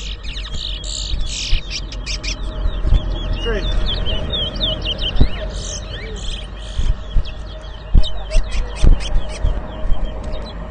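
Caged towa-towa finches singing in a song contest: quick, high whistled phrases and chirps, repeated one after another throughout, over a low rumble and background voices.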